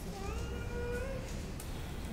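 A single high, drawn-out call lasting about a second, rising slightly in pitch near its end.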